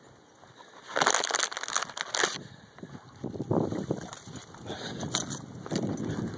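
A dog chewing a wooden stick, with irregular bursts of crunching and crackling, the loudest about a second in.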